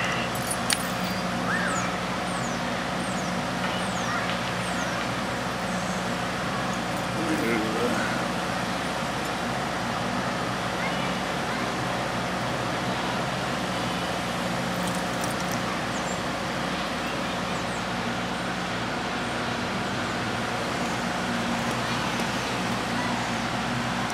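A steady, even engine hum with faint background noise, unchanging throughout.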